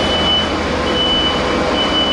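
A heavy construction machine's back-up alarm sounding three long, high beeps about a second apart over steady machinery noise.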